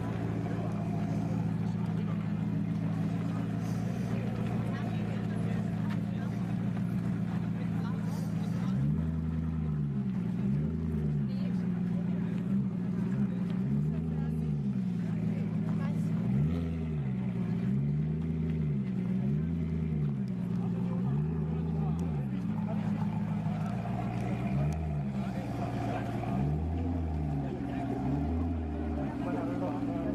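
Alfa Romeo Disco Volante's V8 engine idling steadily, then from about nine seconds in revved again and again in short blips, the pitch rising and falling about a dozen times.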